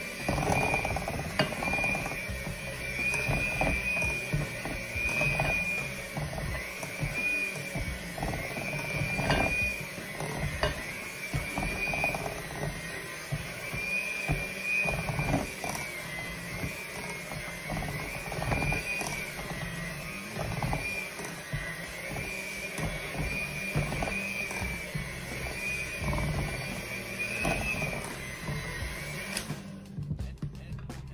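Electric hand mixer running with a steady high whine that wavers in pitch as its beaters work through thick peanut butter cookie dough, with scattered knocks of the beaters against the glass bowl.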